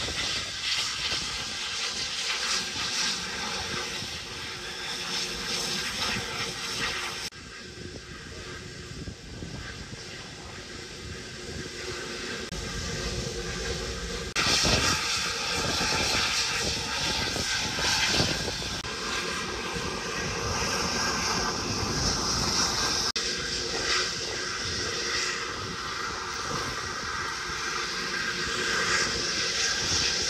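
Steady mechanical roar with a constant hum from industrial plant machinery. It breaks off and resumes at several hard cuts, about 7, 14 and 23 seconds in.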